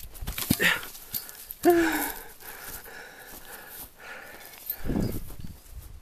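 A man's short grunts of effort while jumping, about half a second and a second and a half in, mixed with thumps of landing and rustling knocks from a handheld camera. A heavier low thud comes near the end.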